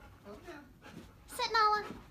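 A dog gives one short high whining cry, about half a second long near the end, its pitch falling slightly.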